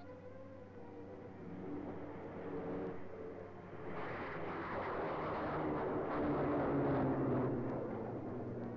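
English Electric Canberra jet climbing away after take-off. The rushing noise of its two Rolls-Royce Avon turbojets swells from about four seconds in as it passes overhead, then eases off near the end.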